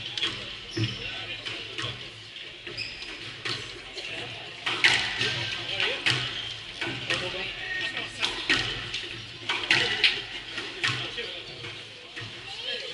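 Squash ball being hit with a racket and striking the court walls, a sharp knock about every second or so through the second half.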